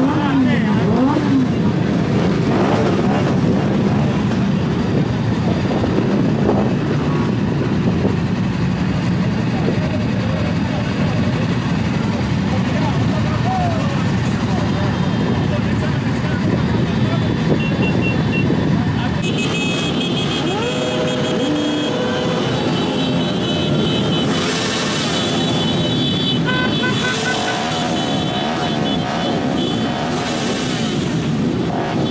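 Many motorcycle engines idling and revving at once in a large crowd of bikes, among voices.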